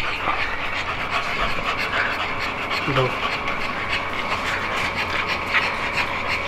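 American Bully dog panting rapidly and steadily, close by.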